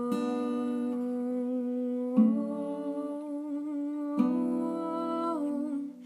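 Acoustic guitar struck in single chords about every two seconds, three in all, each left to ring, under a woman humming long held notes that move with the chords.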